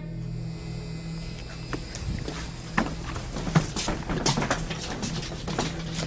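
Hurried footsteps and handling noise on a handheld camcorder: irregular knocks and scuffs that thicken about two seconds in, over a steady electrical hum in the recording.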